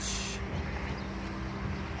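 Distant highway traffic: a steady low hum with no single vehicle standing out.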